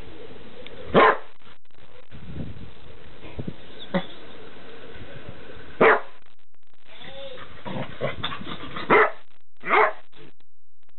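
Glen of Imaal terrier giving short single play barks while tussling with another terrier over a blanket: one bark about a second in, another near six seconds, and two close together near the end.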